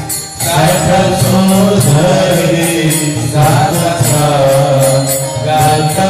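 Hindu devotional chant sung to music, the voice gliding and holding long notes, with a steady metallic clinking of small hand cymbals about three times a second.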